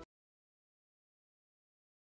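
Silence: the soundtrack cuts off abruptly at the very start and nothing at all is heard.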